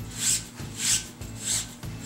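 Sheer voile curtain fabric rubbing and swishing as it is pushed along a thin magnetic curtain rod, in three separate strokes about half a second apart.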